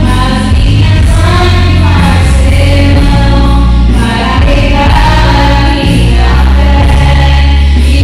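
Two women singing a Christian worship song together through microphones, over loud amplified backing music with a heavy bass.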